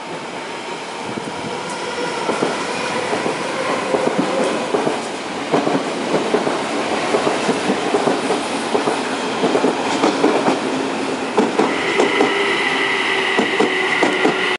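Odakyu 50000-series VSE electric express train passing a station platform without stopping, its wheels clacking in quick succession over rail joints as it draws alongside and grows louder. A steady high whine joins near the end.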